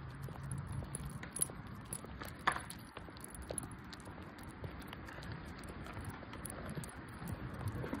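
Walking on a concrete path with a small dog's metal collar tag jingling lightly and irregularly, and two sharper clicks about a second and a half and two and a half seconds in.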